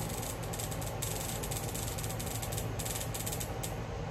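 Electric bug zapper going off several times: runs of rapid crackling snaps as an insect is caught on the grid, one bigger than a mosquito by the owner's reckoning.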